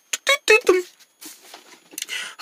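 A voice making a few quick short syllables, then faint rustling.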